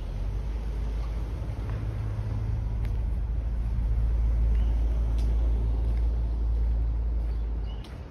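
Low, steady rumble of a motor vehicle's engine, swelling toward the middle and cutting off sharply near the end, with a few faint clicks over it.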